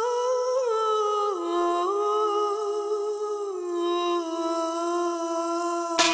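A solo wordless vocal line, hummed or sung in long held notes that step slowly down in pitch, with no beat or accompaniment: the sung intro to a dance-pop track.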